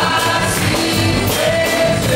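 Live Christian worship music: a band playing, with several voices singing together in long held notes over a steady drum beat.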